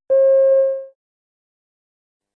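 A single electronic beep: one steady mid-pitched tone lasting under a second, the signal that a listening-test extract has ended before the next question.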